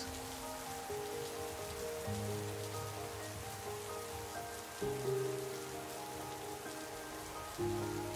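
Steady rain falling, under soft sustained music chords that change a few times.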